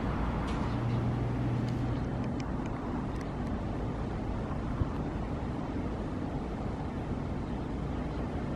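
Steady low rumble of street traffic, with a low hum over the first couple of seconds and a single faint click just before the five-second mark.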